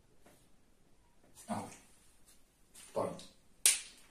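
Two short spoken words, then a single sharp click near the end.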